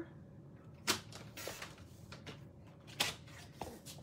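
Red cardstock being trimmed and handled on a paper trimmer: two sharp clicks about two seconds apart, with softer paper rustles and taps between them.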